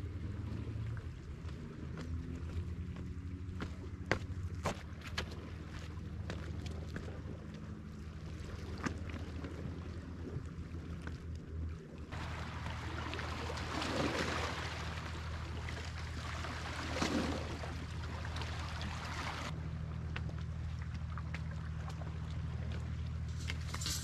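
Outdoor wind noise on the microphone over a low steady drone, with scattered crunching footsteps on stony ground. In the second half the noise grows fuller, with two stronger surges.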